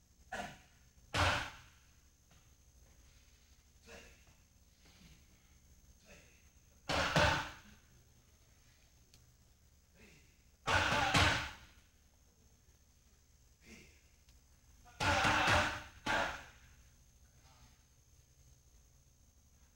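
Boxing-gloved punches smacking into a trainer's padded Thai pads, in single hits and quick pairs of two, spaced several seconds apart.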